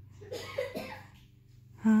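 An infant making a few soft, short vocal sounds in the first second, then a woman's loud, high-pitched, sing-song baby-talk 'hi' just before the end.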